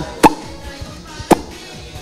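Two short, sharp mouth pops made with pressed lips, about a second apart, that sound like a WhatsApp notification tone and imitate small farts. Faint background music runs underneath.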